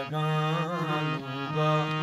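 A harmonium playing sustained reedy chords and melody, with a man singing a held, wavering, ornamented line of a Balochi ghazal over it.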